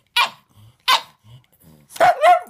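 A pug barking twice, short sharp barks about three quarters of a second apart.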